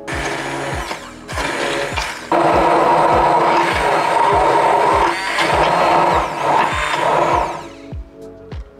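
An 800 W hand-held immersion blender puréeing roasted pumpkin with soft cheese and milk in a tall plastic jug. It runs in two short bursts, then steadily from about two seconds in, and stops just before the end.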